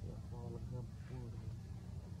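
A low-pitched man's voice talking briefly about a third of a second in, over a steady low rumble.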